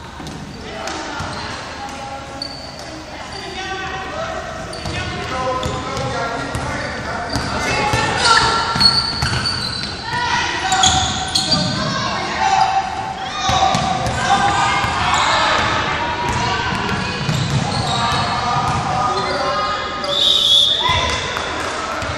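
Basketball bouncing on a hardwood gym floor amid girls' shouting and indistinct chatter, all echoing in a large hall. The activity grows busier and louder a few seconds in.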